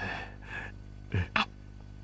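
A man's soft, breathy chuckle: a breathy exhale at the start, then two short huffs of laughter a little over a second in.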